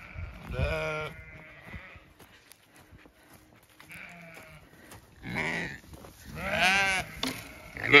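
Zwartbles sheep bleating: about four separate calls with quiet gaps between them, the loudest near the end.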